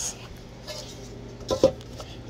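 Metal casing of a JFA car-audio power supply being handled and set down on a hard surface, with two quick knocks about a second and a half in.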